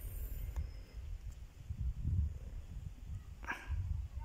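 Wind rumbling on the microphone, with a dog barking once near the end.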